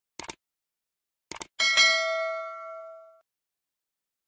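Subscribe-button sound effect: two quick mouse clicks, two more about a second later, then a single notification-bell ding that rings out and fades over about a second and a half.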